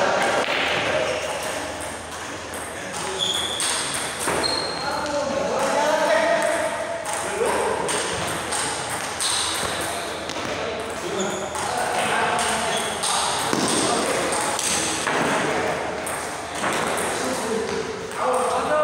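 Table tennis ball clicking off bats and the table during play, with voices talking in the background.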